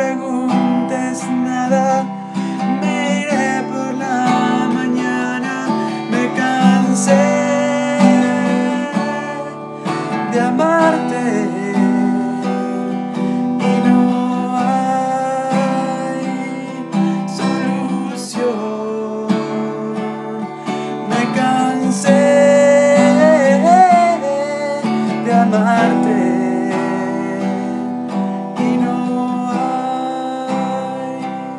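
Acoustic guitar strummed in a steady chord rhythm, with a man's voice singing along over it in places.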